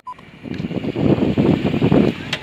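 Wind buffeting a phone's microphone: an irregular rumble that starts about half a second in and grows louder.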